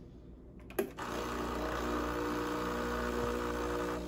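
A click, then the Breville Barista Express's vibratory pump starts and runs with a steady hum, pushing water through the group head in a rinse flush that clears leftover cleaning solution and dirty water after the cleaning cycle.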